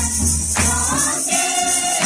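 A group of young women and girls singing a Mundari Christian hymn together, accompanied by steady jingling percussion. A low accompaniment part drops out about halfway through.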